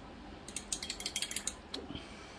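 A quick run of small, hard clicks and rattles, like a ratchet, lasting about a second and starting about half a second in, from painting supplies being handled on the desk.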